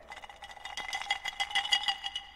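Ice cubes clinking against the inside of a glass as the drink is swirled in the hand: a quick, uneven run of light clinks with a faint glassy ring.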